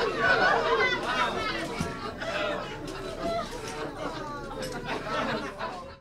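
Voices talking and chattering on a live comedy-club recording, fading out near the end.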